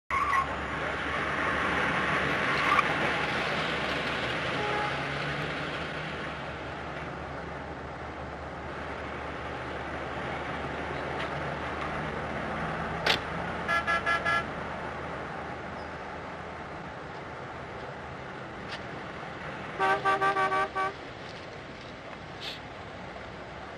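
A car horn sounds in quick runs of short toots: three about 14 seconds in and about four more near the end. Underneath is a street traffic hiss that swells and fades in the first few seconds.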